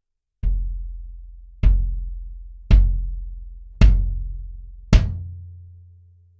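Acoustic kick drum with Evans heads struck five times, about a second apart. Each hit has a sharp attack and a low note that rings out and fades, and the last one rings the longest.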